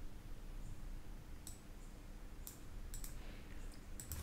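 Faint clicking at a computer: a handful of short, sharp clicks, mostly in the second half, over a faint steady low hum.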